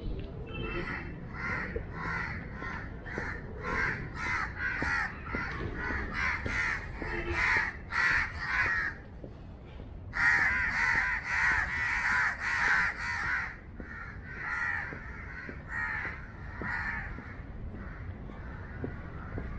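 Birds calling in a rapid run of short repeated calls, several a second, with a brief pause about nine seconds in and the loudest stretch just after it.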